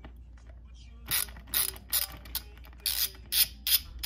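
Socket ratchet clicking in a run of short back-and-forth strokes as it loosens the screw of a hose clamp on an intake hose. The strokes begin about a second in.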